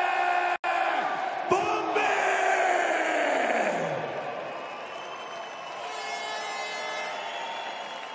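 Ring announcer's long drawn-out shout, held on one note through the arena PA over the crowd, breaking off about a second and a half in; the sound then sinks in pitch and fades into crowd noise.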